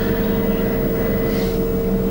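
Steady machine hum with a constant low tone, unchanging throughout, from electrical equipment or a cooling fan running in the room.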